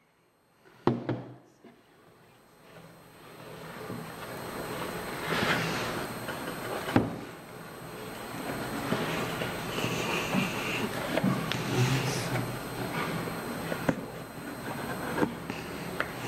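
Putty knife scraping and pressing wood filler into the joints of a small pine box, with light knocks and handling of the wood pieces. There is a sharp click about a second in and a louder knock near the middle.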